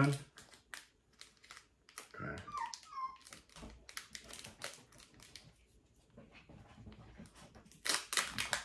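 Foil booster-pack wrapper crinkling and crackling as a Pokémon card pack is handled and ripped open. About two seconds in, a Maltese puppy gives a short, high whine that falls in pitch.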